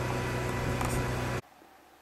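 Small portable air compressor running with a steady hum, cutting off suddenly about a second and a half in, after which there is only faint quiet.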